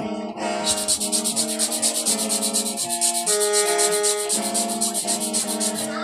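Hmong qeej, a bamboo free-reed mouth organ, being blown as it is tested during repair: several reed tones sound together as held chords that shift every second or so. A fast, even rasping runs over the chords through most of it.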